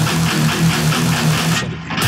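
Distorted Agile eight-string electric guitar, run through a Line 6 POD X3 modeller, playing a fast, even riff over a dubstep backing track. About a second and a half in, the music briefly thins and dips, losing its top end.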